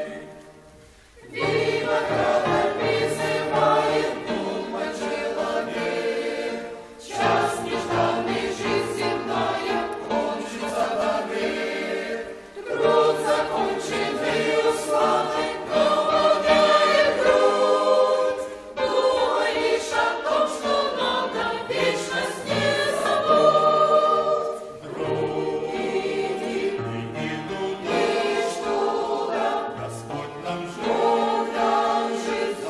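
Mixed choir of men's and women's voices singing a hymn in phrases, with short breath pauses about every six seconds. The singing resumes after a brief pause at the start.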